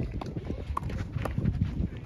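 Tennis rally: sharp pops of the ball struck by rackets, two of them about a second apart, with footsteps on the court over a low rumble.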